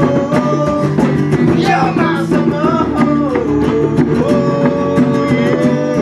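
Live acoustic band music: a strummed acoustic guitar keeps a fast, even rhythm under a melody line of long held notes that slide down and back up in pitch.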